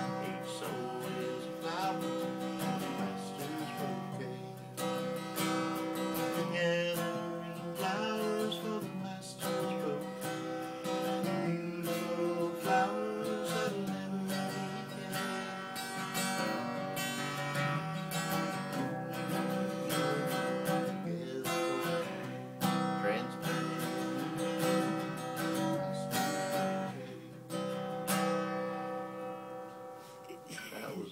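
Acoustic guitar being strummed, chords ringing on with regular strokes.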